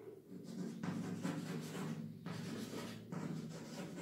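Chalk scratching on a blackboard in a run of short strokes as words are written, over a steady low hum.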